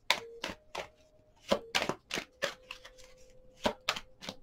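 A deck of tarot cards being shuffled by hand: about a dozen sharp, irregular snaps and taps as the cards slap together.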